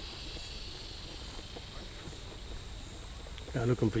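Insects in the bush making a steady high-pitched drone, with a fainter, lower drone that fades out about a second in. A man's voice begins near the end.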